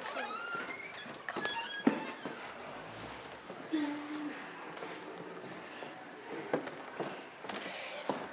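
Door hinge creaking in a few squeaky rising tones, then a sharp knock about two seconds in; later a few soft clicks.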